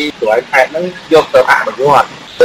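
Only speech: a voice talking continuously.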